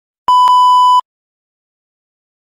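A TV colour-bar 1 kHz test tone: one steady beep of under a second that starts and cuts off abruptly.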